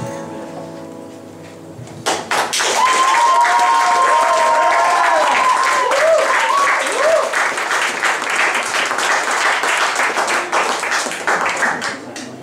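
An acoustic guitar's last notes die away. About two seconds in, an audience breaks into applause with a long whistle and some cheering voices.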